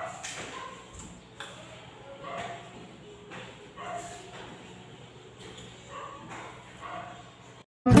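Crunchy bites and chewing of unripe green mango, a crisp crunch about once a second, with short high pitched sounds between some of the bites over a faint steady hum. Guitar music comes in suddenly at the very end.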